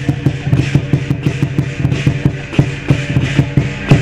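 Lion dance percussion: a large Chinese drum beaten in a fast, even rhythm of about four to five strokes a second, with cymbals and gong ringing on underneath.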